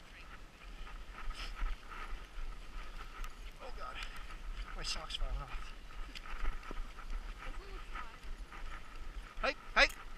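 Dog sled moving over packed snow: a steady rush of runner and wind noise with rumble on the camera microphone, and a few short squeaks and scrapes, the loudest near the end.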